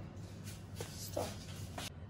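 Faint scraping and rustling as fingers scoop sticky chocolate cookie dough out of a plastic mixing bowl, over a steady low hum.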